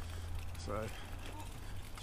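Brompton folding bicycle being ridden: a steady low rumble with faint rattling clicks from its rattly gears.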